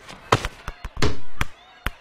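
A football being kicked and bouncing off a wall and the ground: a quick series of sharp thuds and knocks, with the loudest about halfway through.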